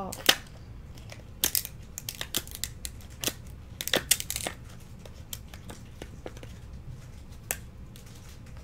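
Thin plastic card sleeve crinkling and crackling in short, irregular bursts as a baseball card is handled and slid into it, the loudest crackles about a quarter second in and around four seconds in.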